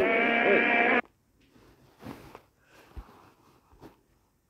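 Soundtrack of a short video playing on a phone: a steady, pitched sound with many overtones that lasts about a second and cuts off abruptly as the video is left. Then near quiet with a few faint taps.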